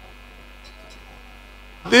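Steady electrical mains hum, a set of constant tones, during a pause in amplified speech. A man's voice through the microphones starts speaking just before the end.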